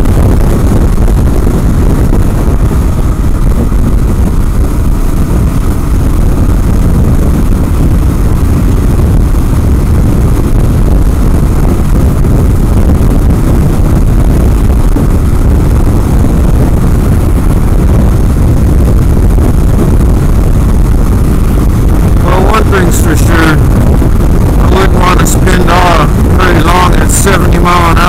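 Heavy wind buffeting on the microphone over the 2016 KLR650's single-cylinder engine running at freeway speed, a continuous loud roar. About six seconds before the end, wavering higher tones, possibly a voice, come in over the roar.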